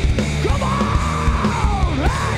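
Progressive metal band playing live through a festival PA, drums and distorted guitars driving under a long yelled vocal note that comes in about half a second in and slides down in pitch near the end.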